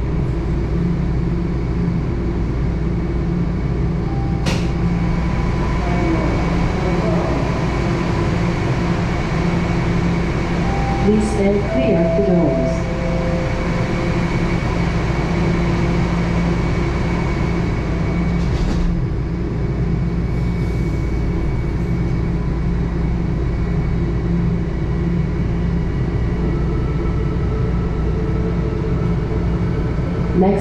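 Toronto Rocket subway car standing at a station platform, its onboard equipment giving a steady hum with a few thin tones. Voices are heard briefly near the middle, and a single click comes twice. Near the end a new tone comes in as the train pulls away.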